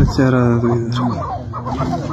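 Chukar partridges calling: a long held call in the first second, then a run of short, quickly repeated notes, from two males squaring up to fight.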